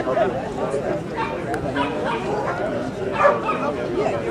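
A dog barking amid the background chatter of people.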